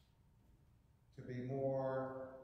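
A quiet pause, then a little past halfway a man's voice comes in on one long, drawn-out vowel held at a steady pitch, the preacher's voice carrying in the church.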